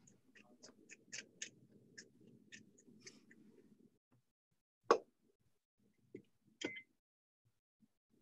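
Hand pepper mill grinding black peppercorns: a faint grainy crunch with a run of small clicks for about four seconds. Then a sharp knock about five seconds in and two lighter knocks a little later.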